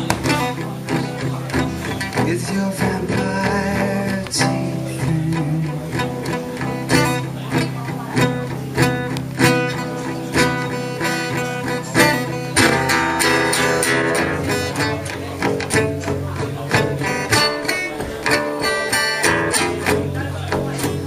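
A band playing live, an instrumental passage with regular percussive hits and no singing.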